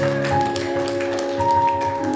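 Church keyboard playing held, organ-like chords, with a higher note coming in about halfway through, while hands clap along.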